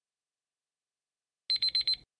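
Timer alarm sounding as a countdown reaches zero: four rapid, high-pitched electronic beeps in about half a second, starting about one and a half seconds in, signalling that time is up.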